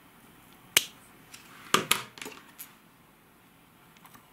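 Small metal scissors snipping through a rotted orchid root base: a few sharp clicks, one about a second in and a louder pair shortly after.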